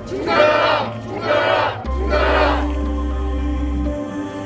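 A group of people shouting a slogan in unison three times with about a second between shouts, over background music with steady low bass notes.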